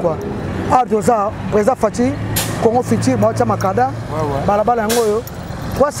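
A heavy truck driving past, its engine a steady low drone for a couple of seconds in the middle, with two short hisses.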